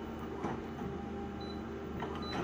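Office multifunction copier running as it scans an original, a steady low hum with a faint tick about half a second in and another near the end.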